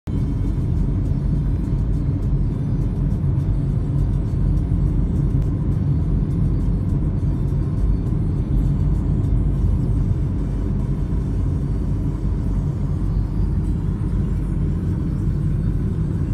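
Steady low rumble of engine and tyre noise heard inside the cabin of a moving vehicle.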